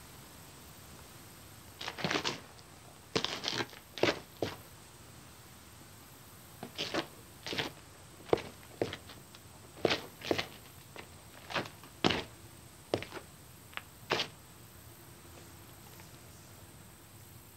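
Footsteps crunching and scuffing on gravel and rock: irregular single steps and short clusters starting about two seconds in and stopping shortly before the end.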